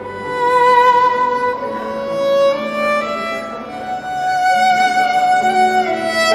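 Violin played with the bow: a slow melody of long held notes that change every second or so.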